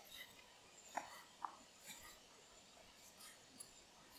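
Near silence, with a few faint short clicks and taps, the clearest two about a second in, from a knife cutting raw pork spare ribs into pieces.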